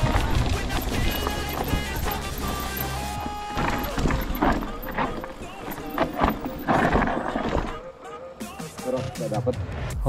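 Background music with held notes and a steady bass for about the first three seconds. After that, the clatter and rattle of a mountain bike riding fast down a rough, rocky dirt trail.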